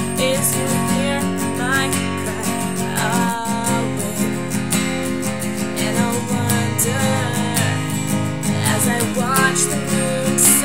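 Capoed acoustic guitar strummed steadily, with a woman singing a slow melody over it in phrases.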